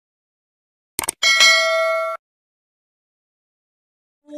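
Subscribe-button animation sound effect: a quick click about a second in, then a single bell ding that rings steadily for about a second and cuts off.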